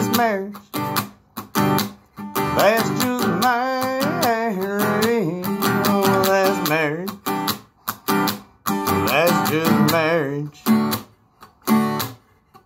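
Acoustic guitar strummed in a steady rhythm under a man's singing voice holding long, wavering notes.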